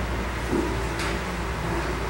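Steady low hum and hiss of room tone in a meeting chamber, with a faint tick about a second in.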